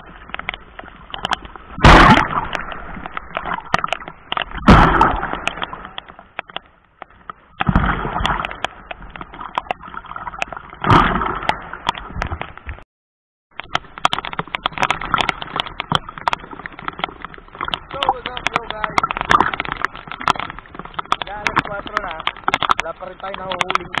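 Waves surging and washing over a camera at the water's edge, four big swashes about three seconds apart, with constant crackling of water on the camera. After a break, steady sloshing sea water around a person wading.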